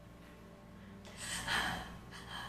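A person's short breathy gasp about halfway through, coming after a quiet first second.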